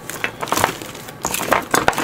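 Small hobby paint bottles knocking and clinking together as they are sorted through: a string of short, irregular clicks and taps.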